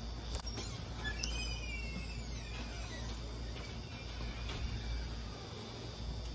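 Quiet background with a steady low rumble, and a faint falling whistle-like tone a little over a second in.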